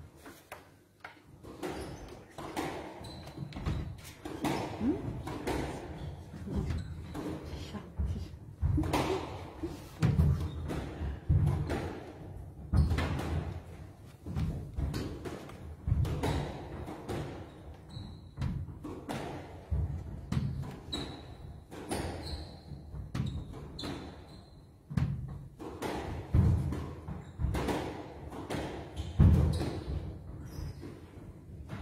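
A squash rally: the hard rubber ball cracking off rackets and smacking the walls in an irregular run of sharp knocks, mixed with players' footfalls. Short high squeaks in the middle of the rally are shoes on the court floor.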